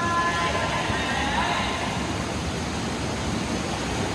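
Continuous splashing and churning of water from several swimmers' freestyle kicks and arm strokes.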